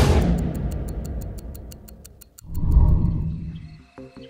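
Cinematic soundtrack sound design: a deep bass hit that fades out under rapid, clock-like ticking, then a second deep swelling boom about two and a half seconds in.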